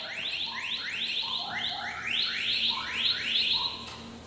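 A rapid run of short, overlapping rising chirps, electronic-sounding tones sweeping upward again and again, that stops near the end, over a faint steady hum.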